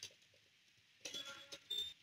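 A few soft key clicks of a computer keyboard being typed on: one near the start, then a faint cluster about a second in.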